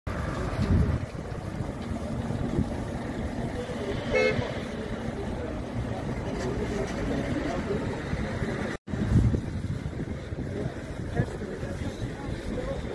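Street traffic noise with a short car horn toot about four seconds in; the sound cuts out for an instant near nine seconds.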